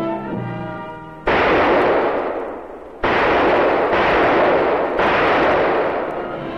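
Brass-led orchestral music fades out, then four gunshots ring out, each sudden and followed by a long hissing tail: one about a second in, then three about a second apart from midway on.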